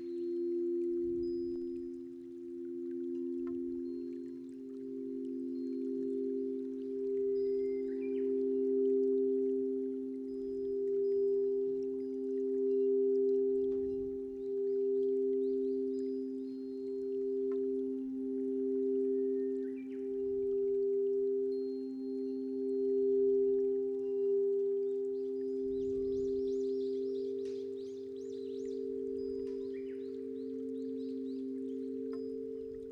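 Two crystal singing bowls played at once with mallets, holding two overlapping steady tones that swell and fade in slow waves. A light, high chiming joins near the end.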